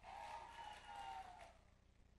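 Near silence in the hall, with a faint, indistinct sound for about the first second and a half.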